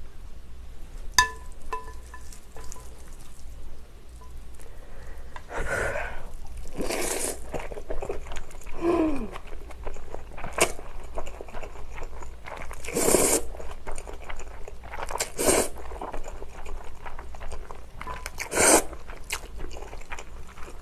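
A person slurping up mouthfuls of spicy bibim noodles several times and chewing between slurps. About a second in, chopsticks click against the glass bowl with a brief ring.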